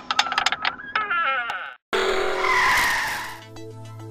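Outro sound effects running into music: a quick run of clicks and stepping, wavering tones, then a loud noisy whoosh about two seconds in, settling into music with a steady low note from about three and a half seconds.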